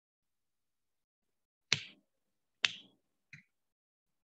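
Two sharp knocks about a second apart, both equally loud, followed by a much fainter short click.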